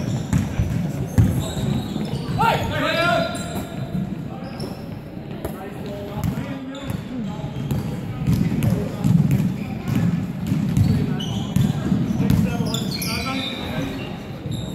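Basketball bouncing on a wooden gym floor during play, with players' voices calling out, all echoing in a large indoor hall.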